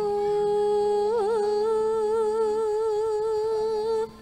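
A female Javanese sinden singing into a microphone, holding one long note: she slides up onto it, bends it in a quick turn about a second in, then sustains it with light vibrato until it stops at the very end. Soft, steady low accompaniment notes sound beneath the voice.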